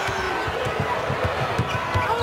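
Basketball dribbled on a hardwood court: a run of short, low bounces over steady arena crowd noise.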